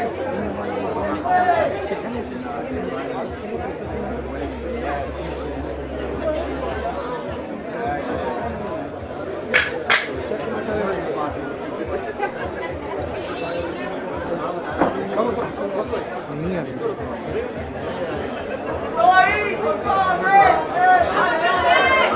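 Overlapping voices of a crowd chattering, with nearby men talking, and a single sharp click a little before the halfway point; the voices grow louder near the end.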